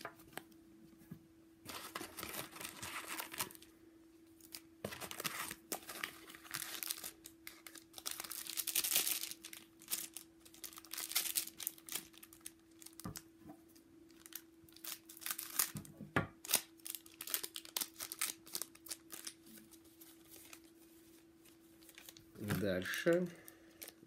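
Foil wrappers of trading card packs crinkling and tearing as they are opened by hand, in repeated bursts of a second or two, over a faint steady hum.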